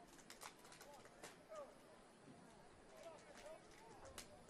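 Near silence on the field: faint distant voices and a scattered few light clicks.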